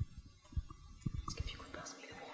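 A quiet pause in a room: soft whispering with faint, scattered low bumps and rustles.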